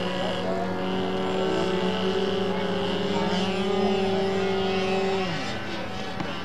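Small model engine of a radio-control powered paraglider running at steady high revs as it is hand-launched and climbs away; its pitch dips and the sound breaks off about five seconds in.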